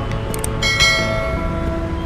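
A quick mouse-click sound effect, then a bright bell chime about half a second in that rings on and fades, over background music.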